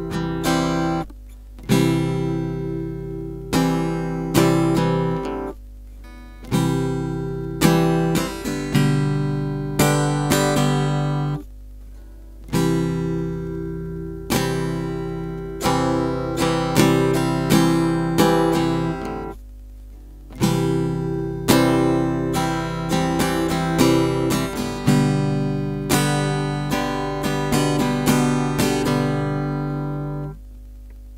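Acoustic guitar strummed in a repeating pattern of down- and upstrokes, each chord ringing and fading. There are a few short breaks where the ringing is cut off before the strumming starts again with the next chord.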